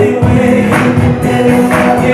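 Gospel song with choir singing over a steady beat of about two beats a second, played loud for a praise dance.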